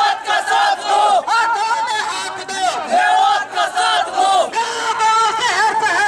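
A crowd of young men shouting protest slogans together, loud, in short repeated bursts.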